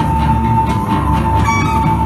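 Live band music: a steady high drone tone over a dense, pulsing low end, with cello and violin among the instruments.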